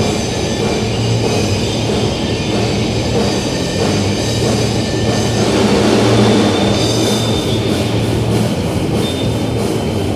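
Live rock band playing an instrumental passage without vocals: electric guitar and drum kit, loud and steady.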